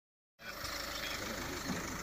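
Steady outdoor background noise with a low running vehicle engine idling, starting abruptly about half a second in.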